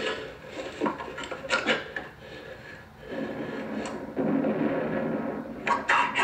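Scraping and rubbing against wood as men scramble through a timber-shored tunnel and up its ladder. A few scattered knocks come in the first two seconds, then a steadier, louder rustle starts about four seconds in.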